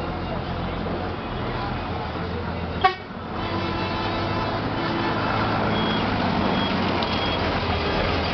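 Road traffic: engines running steadily with horns tooting and some voices in the din. A single sharp knock comes about three seconds in, and three short high beeps follow near the end.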